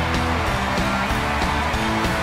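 Walk-on music from a live talk-show house band, with held notes that change every fraction of a second.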